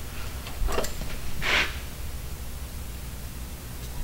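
Quiet workshop room tone, a steady low hum, with a short soft hiss about a second and a half in and a couple of fainter ones just before it.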